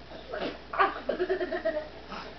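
A young child laughing and squealing: a couple of short laughs, then a longer wavering squeal about a second in.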